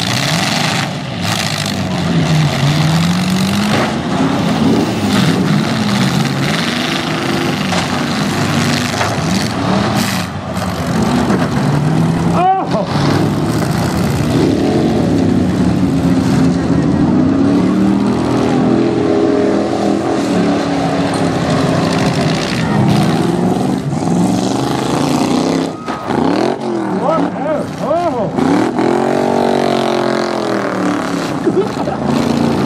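Several eight-cylinder demolition derby car engines revving up and down, with a few sharp bangs from cars hitting each other.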